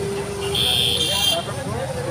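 A vehicle horn sounding in street traffic for about a second: a steady lower note, joined about half a second in by a shrill high one that cuts off shortly after, over murmuring voices.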